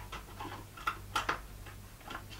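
Faint clicks and light knocks of a hard plastic toy hamster house being turned over in the hands, with a few short clicks about a second in.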